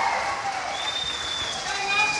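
A seated audience applauding a speaker to the podium, with voices calling out over the clapping.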